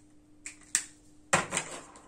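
Sharp plastic clicks of whiteboard marker caps being handled as markers are swapped: two light clicks, then a louder clatter about a second and a half in.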